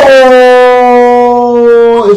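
A man's loud, drawn-out shout on one held note, sliding slightly down in pitch.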